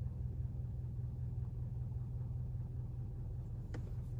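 Steady low rumble of a car heard from inside the cabin while it moves slowly, with a faint click near the end.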